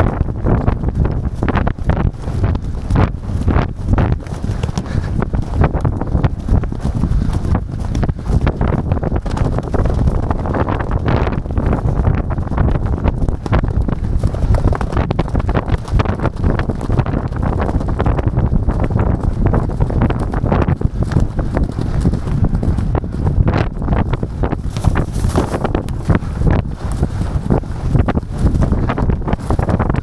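Hoofbeats of a racehorse galloping flat out in a steeplechase, heard close from the saddle, with other horses galloping alongside. A strong low wind rumble on the microphone runs under the hoofbeats.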